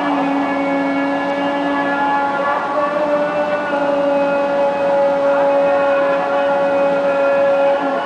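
Muezzin's voice in the Islamic call to prayer (adhan), holding one long, steady note that begins with a short upward glide and breaks off just before the end. Other held voices at different pitches overlap it.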